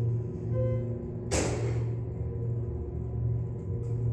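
Schindler glass elevator car travelling up: a steady low hum with several steady tones, and a short hiss about a second in that fades away.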